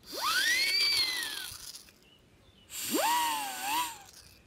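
Plastic lip-shaped party whistle blown twice, each toot sweeping sharply up in pitch over a breathy hiss. The first then sags slowly down, and the second, blown through the whistle's back end, wavers.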